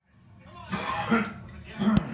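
Short, noisy vocal sounds from a person in two bursts: one about two-thirds of a second in and one just before an abrupt cut at the end.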